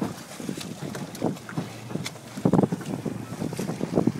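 Wind buffeting the microphone out at sea, in irregular gusts, over the wash and splash of choppy water.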